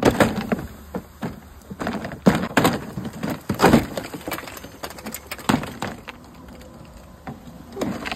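Exterior siding trim being yanked and pried away from the wall, giving a run of irregular sharp cracks, snaps and rattles, loudest a little past two seconds in and again near four seconds.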